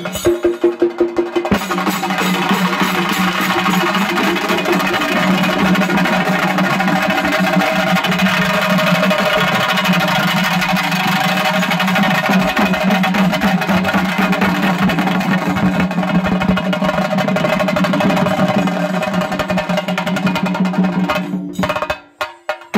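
Chenda melam ensemble: several stick-beaten chenda drums with small hand cymbals. A few separate loud strokes open it, then about a second and a half in the drums break into a fast, continuous roll that holds steady, and the ensemble stops just before the end.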